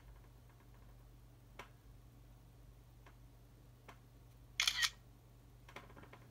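Smartphone camera shutter sound, one short double click about four and a half seconds in, as the scanning app captures a photo of the paper page. A few faint ticks of handling come before and after it, over a low steady hum.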